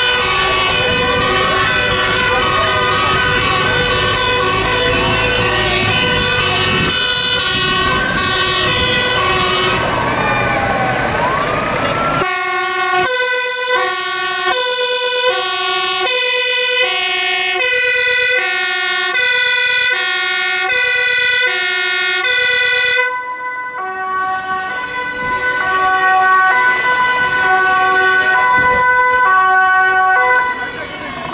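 Fire truck's two-tone emergency siren, switching between a high and a low tone about twice a second. For the first part it runs over the rumble of the truck's diesel engine and the rising and falling wail of another siren. About two-thirds of the way through it drops sharply in level and carries on fainter.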